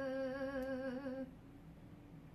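A voice holding one long sung or hummed note with a slight wavering vibrato, which stops abruptly about a second and a quarter in, leaving faint room tone.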